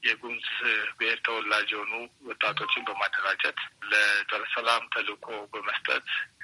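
Only speech: a voice talking without pause.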